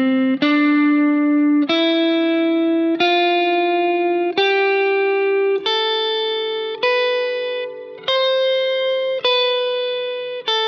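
Fender Stratocaster electric guitar playing the major scale slowly, one note at a time. A new note is picked about every 1.2 seconds, each ringing until the next, climbing step by step in pitch.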